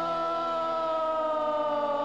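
A sustained, siren-like tone on a 1960s garage-rock record, held and slowly sliding down in pitch over a steady low drone.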